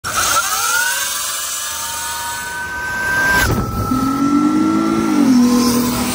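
Sur-Ron electric dirt bike's motor whining as it pulls away, the whine rising in pitch and then holding steady over a rushing noise. About three and a half seconds in the sound cuts to another run with a lower whine that dips slightly near the end.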